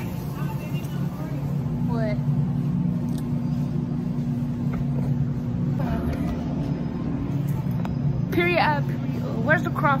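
Steady low machine hum that runs unbroken, with a few short snatches of a voice about two seconds in and again near the end.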